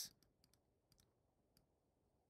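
Near silence with a handful of faint, sharp computer mouse clicks spread through it, made while an annotation is drawn on a chart on screen.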